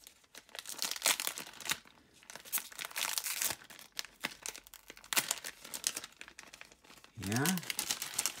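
A foil-lined plastic bag being torn open and crinkled by hand: a run of irregular, sharp crackling rips.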